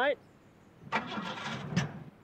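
Car engine cranking on the starter motor for about a second, starting suddenly and cutting off without catching. It is the first try after the ignition leads have been pushed back onto the distributor cap.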